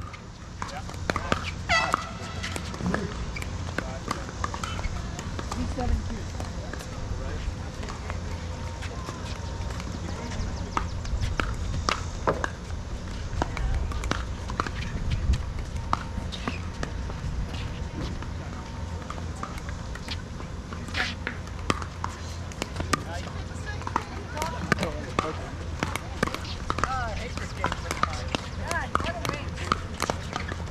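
A pickleball rally: irregularly spaced sharp pops of paddles hitting a hollow plastic ball, with the ball bouncing on the hard court.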